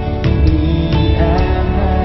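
Live worship band music: held chords with a percussion tick about twice a second, and a man's voice singing a short phrase about halfway through.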